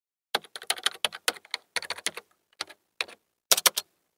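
Typing on a computer keyboard: uneven runs of quick keystroke clicks in short bursts, ending with a fast flurry of a few louder keystrokes.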